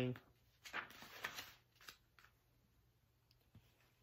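Page of a paperback picture book being turned by hand: two short, soft paper rustles in the first second and a half, then a couple of faint ticks.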